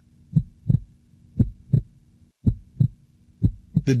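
Heartbeat sound, a steady lub-dub: four double beats about a second apart, over a faint low hum.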